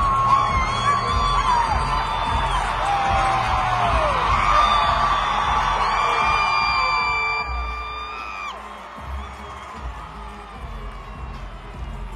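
A huge stadium concert crowd cheering and calling out in long sliding shouts over loud amplified live music with a heavy bass beat. The music and the cheering drop in loudness about eight seconds in.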